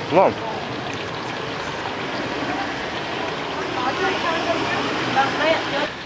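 Steady, noisy street-alley background with people talking faintly, after a man's brief "wow" at the start.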